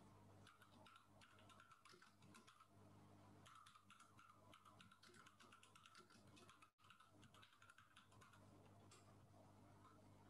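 Faint computer keyboard typing: quick, irregular key clicks through most of the stretch, over a steady low hum.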